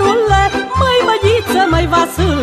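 Romanian folk band playing an instrumental passage: violins carry an ornamented melody with wide vibrato over a steady pulsing bass beat.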